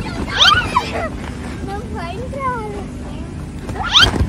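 Girls squealing and shrieking in play, with high rising squeals about half a second in and again just before the end, and shorter vocal sounds between, over a steady low hum.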